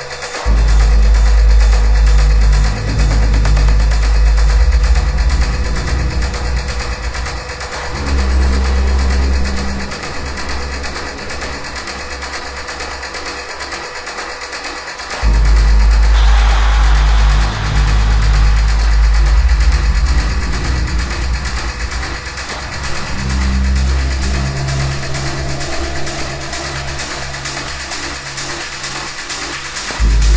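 Minimal techno playing: a heavy, pulsing bass line under a steady fast hi-hat beat. The bass drops back for several seconds in the middle and comes back in hard about halfway through, followed at once by a falling noise sweep.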